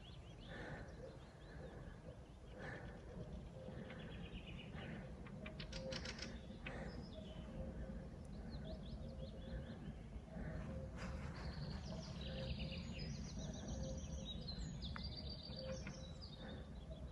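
Faint birdsong from several small birds, with chirps and trills scattered throughout. A low short note repeats steadily from about a quarter of the way in.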